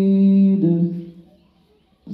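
A man chanting Qur'an recitation in Arabic through a microphone and loudspeaker. He holds a long drawn-out note, steps down to a lower note just after half a second in, and trails off about a second in.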